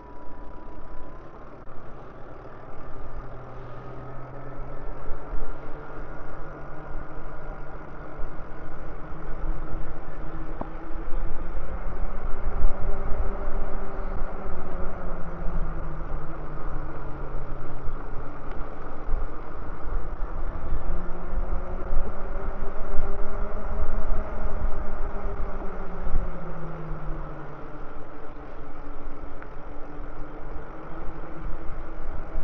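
Electric bike motor whining while riding, its pitch slowly rising and falling with speed, over heavy wind rumble on the microphone.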